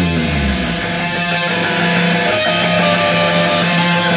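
Rock band rehearsal break: the drums drop out and an electric guitar plays on alone through its amp, while a low bass note dies away in the first second or so.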